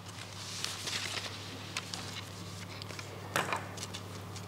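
Papers being handled and rustled at a table close to a desk microphone, with a few light clicks and one louder rustle near the end, over a steady low electrical hum.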